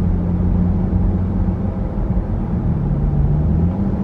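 A car's engine and road noise heard from inside the cabin while driving: a steady low drone over tyre hiss, its pitch dipping and then climbing again near the end.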